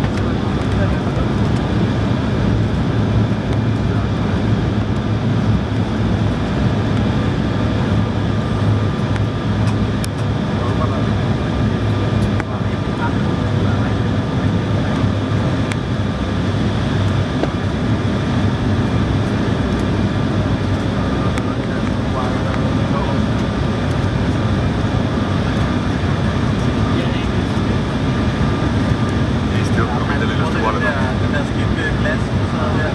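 Steady cabin noise inside an Embraer 170 airliner on final approach: a deep rumble of airflow and its two GE CF34 turbofans, with a few faint steady engine tones above it.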